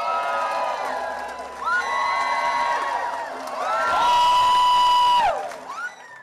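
A theatre audience cheering and whooping, many voices at once in rising and falling 'woo' cries, with one long held cry near the end. The sound cuts off abruptly just before the end.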